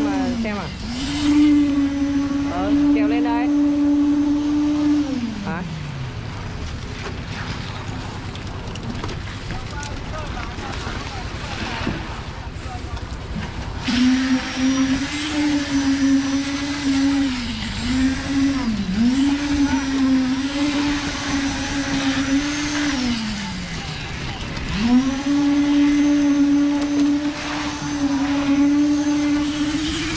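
Concrete poker vibrator running with a steady hum as it compacts wet concrete in a roof slab. It winds down to a stop about five seconds in, starts up again about halfway through, and winds down and restarts once more near the end.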